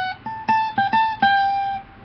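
Acoustic guitar playing a short single-note riff: about six quickly plucked high notes, the last one left ringing. It is the riff moved to its octave position.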